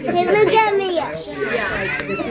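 Young children's voices, high-pitched chatter and exclamations with no clear words.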